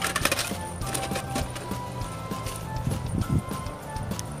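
Coins tipped out of a Snoopy coin bank, clinking and clattering in scattered bursts as they fall onto the pile, over background music.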